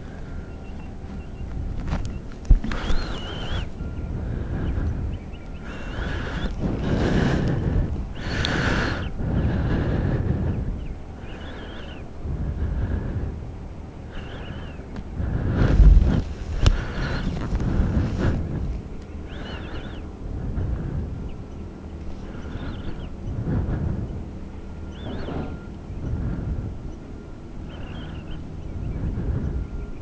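Wind buffeting the microphone in gusts that swell and fade every second or two. There are a couple of sharp knocks, about two and a half seconds in and again around sixteen seconds.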